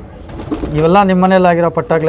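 Domestic pigeon cooing: a low, drawn-out coo starting about half a second in and held for around a second.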